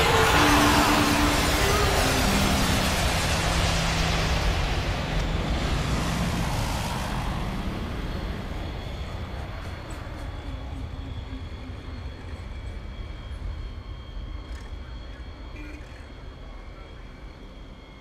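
Outro of an electronic dance mix: a whooshing noise sweep whose hiss falls in pitch over the first seven seconds, over a few held low synth notes. It then settles into a low rumbling noise that fades out steadily.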